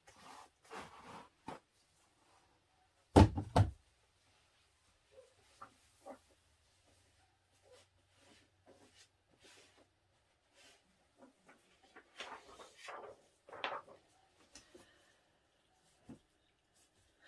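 A sudden loud thump about three seconds in, followed by faint, scattered clicks and rustling.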